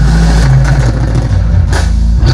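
Live rock band playing loudly: bass, electric guitars and drum kit holding heavy chords, with cymbal crashes about half a second in and again near the end.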